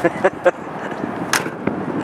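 A car door being shut, closing with one sharp latch clack about a second and a half in, after a few lighter clicks.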